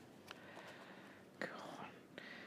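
Quiet room tone, with a softly whispered word about one and a half seconds in.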